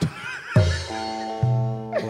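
A stage band's keyboard plays a held chord over a bass note, which steps up once partway through, in the music that backs a tarling drama. It is opened by a brief high, wavering, whinny-like sound and a low hit.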